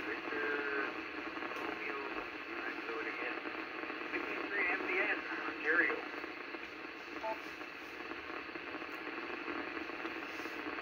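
10-metre FM signal on 29.640 MHz coming out of an Icom IC-746PRO transceiver's speaker: a steady rush of noise with a faint, weak voice buried in it, a distant station barely readable.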